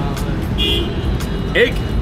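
Steady rumble of street traffic, with a brief high beep a little over half a second in.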